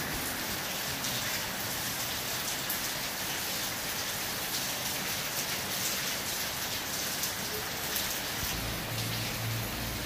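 Steady hiss of falling rain with a faint patter of drops. A low steady hum comes in near the end.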